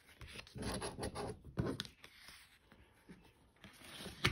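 Quiet, irregular scraping and rustling of a scratch-off lottery ticket handled with a coin on a tabletop, busiest in the first two seconds and fainter after.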